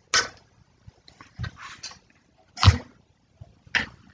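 A person drinking from a plastic water bottle held to the mouth: a series of short drinking and breathing noises, about five in four seconds, the loudest about two-thirds through.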